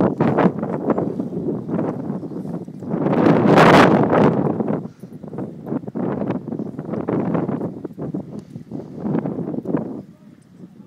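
Wind buffeting the microphone in uneven gusts, the strongest a loud rush about three seconds in that lasts nearly two seconds.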